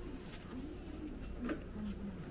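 Repeated low cooing of a dove, with a thin plastic bag crinkling briefly about a second and a half in, over a steady low hum.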